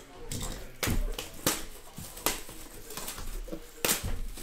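A shrink-wrapped cardboard box being handled and tipped up on a table. Its plastic wrap rustles, and there are four sharp knocks and taps, the last near the end.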